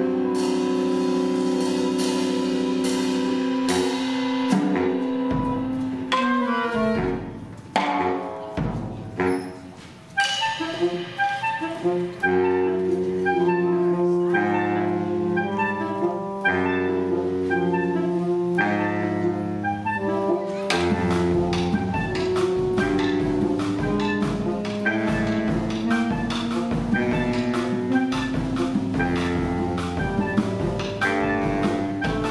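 A saxophone quartet and drum kit play a contrapuntal piece. Held saxophone chords open it, then come a few drum strokes and a brief quieter stretch. After that, interweaving saxophone lines enter, over drumming that turns steady from about twenty seconds in.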